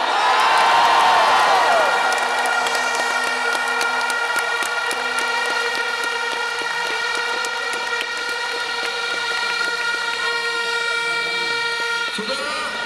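Large stadium crowd cheering and clapping, loudest in the first two seconds. A steady, unwavering pitched tone holds over the crowd noise from about two seconds in.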